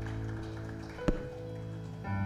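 Soft, held acoustic guitar and keyboard chords ringing out, with one sharp tap about halfway through.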